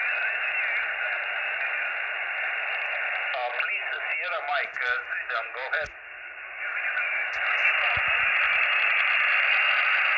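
Shortwave transceiver receiving on 20 m single sideband: steady band hiss squeezed by the receive filter into a narrow voice band. A weak sideband voice comes through for about two and a half seconds near the middle, then the hiss comes back a little louder.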